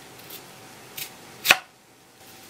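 Chef's knife slicing through a thick daikon radish on a wooden cutting board: three cutting sounds growing louder, the last and loudest a sharp knock on the board about a second and a half in.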